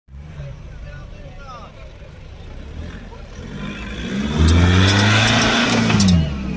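Nissan Patrol 4x4's engine pulling the truck up out of a muddy trench: a low rumble at first, then revving harder about three and a half seconds in and running loud for the last second and a half.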